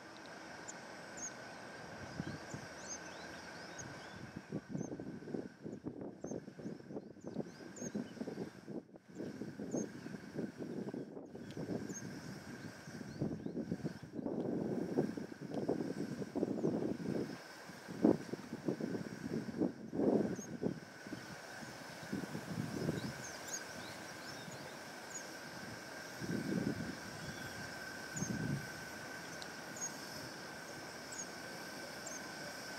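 Wind gusting over the camera microphone, rumbling in uneven bursts that are strongest in the middle. Faint short high chirps and a faint steady high tone sit underneath.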